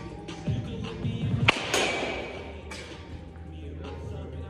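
Wooden baseball bat hitting a ball once, a sharp crack about one and a half seconds in, over background music.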